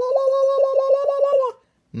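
A man's held high-pitched "woo" with his hand patting over his open mouth about eight times a second, chopping it into a warbling hand-over-mouth whoop (a mock war whoop). It stops suddenly about one and a half seconds in.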